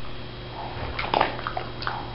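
A dog taking a treat from a hand and chewing it, with small wet mouth sounds and a few short smacks about a second in and near the end, over a steady low hum.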